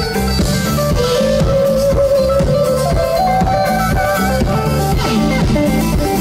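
Rock band playing live: an electric guitar holding long sustained notes that slide upward in pitch twice, over a steady drum kit beat, with no singing.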